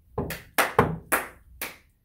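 Wooden gavel banging on a hard tabletop: about five sharp knocks in quick, uneven succession.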